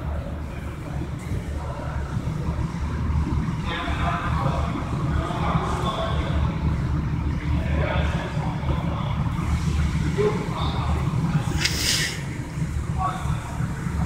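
Workshop background: a steady low hum with faint, distant voices, and one short, sharp metallic sound near the end.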